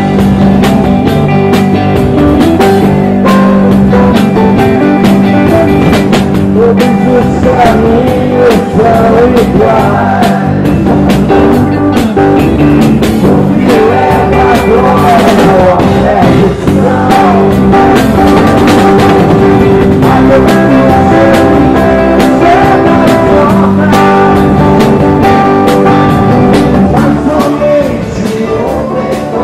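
Live rock band playing loud, with electric guitar over bass and drums and a voice singing along.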